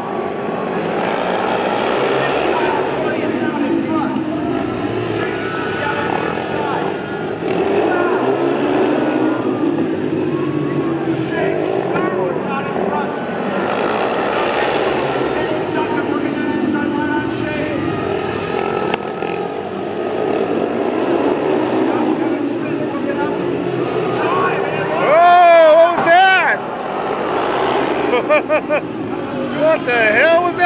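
Several 500cc single-cylinder speedway bike engines racing around a dirt oval, their pitch rising and falling as the riders lap and slide the turns. Near the end one bike passes close, loudest of all, with a quick sweep in pitch.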